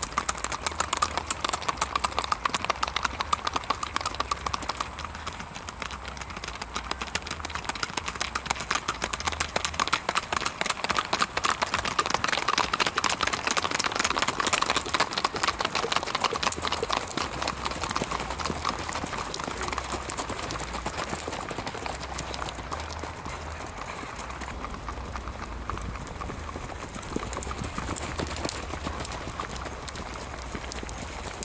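Hoofbeats of gaited horses moving at a fast singlefoot (rack), a rapid, even four-beat clip-clop that swells as riders pass close. A thin, steady high whine runs under it for most of the time.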